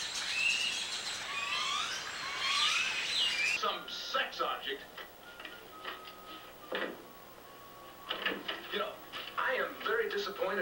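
Birds chirping over a steady drone of insects, cut off abruptly about three and a half seconds in. Then quieter television audio follows: a voice and snatches of music from the TV set.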